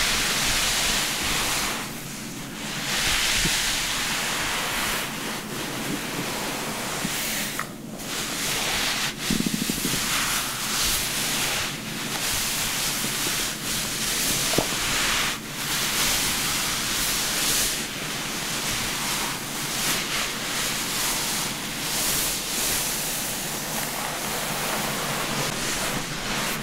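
White cotton towel rubbed and pressed over wet hair: a rough rustling noise that swells and fades with each stroke.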